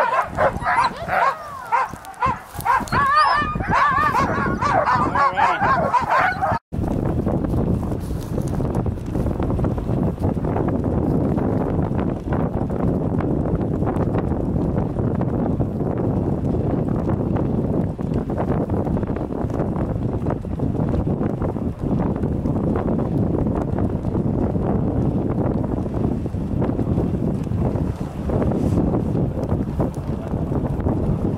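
Harnessed sled dogs yelping and barking excitedly, many high calls overlapping. About seven seconds in the sound cuts abruptly to a steady rushing noise of a dog sled running over snow, with wind on the microphone.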